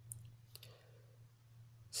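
A few faint, brief clicks in the first half second over a low steady hum.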